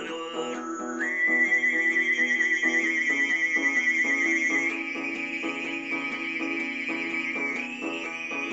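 Tuvan throat singing: a high, whistling overtone melody held over a low voice drone, coming in about a second in and stepping up in pitch a little past halfway, with a quickly strummed long-necked Tuvan lute keeping a steady rhythm underneath.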